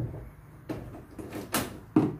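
Metal doorknob being fitted and handled: about five sharp clicks and knocks of the knob, its latch and a screwdriver on the mounting screws, the loudest near the end.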